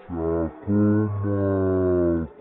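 A man's voice shouting a drawn-out goal call, in three held bursts with the last stretched out for about a second. It is a commentator's goal cry in Romanian.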